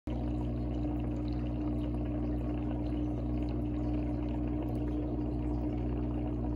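Aquarium filter running: a steady motor hum under a continuous sound of water pouring into the tank.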